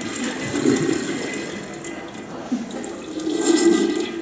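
Toilet-flush sound effect from a children's anatomy app as the animated poop is expelled from the colon. The watery rush swells about half a second in and again near the end.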